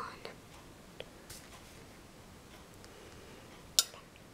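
Quiet room tone with a faint tick about a second in and a sharper click near the end.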